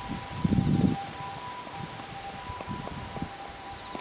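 Wind rumbling on the microphone for about the first second, then dropping to a quieter outdoor hush, with a faint steady two-pitch tone held throughout.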